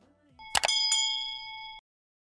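Subscribe-button animation sound effect: a couple of quick mouse-style clicks and a bright bell ding, several pure tones ringing together for about a second before cutting off abruptly.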